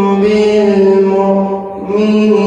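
Young man's melodic Quran recitation (qirat), chanted into a microphone. He holds one long note that sinks slightly in pitch, and it eases off briefly near the end.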